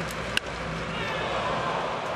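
Crack of a wooden bat striking a baseball once, about half a second in, followed by a steady stadium crowd noise that swells slightly.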